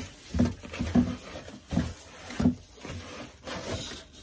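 Rummaging in a cardboard shipping box and its packing: rustling with several dull knocks as a long wooden board is worked loose.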